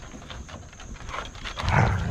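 Basset hound giving one deep, loud bark near the end, over paws scuffling on a wooden deck.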